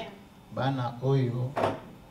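A man's voice saying a few words, followed by one short sharp noise.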